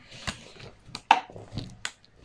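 A few sharp knocks and clicks: a small one just before a second in, the loudest just after it, and another near the end.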